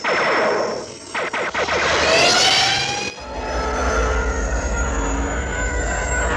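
Film spaceship sound effects: a jet-like whoosh with a rising whine about two seconds in, then a deep, steady rumble from about three seconds in as a large starship passes by.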